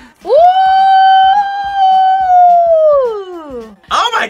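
A high voice sings one long "ooh" that swoops up, holds steady for about three seconds and slides down at the end, over a faint steady beat.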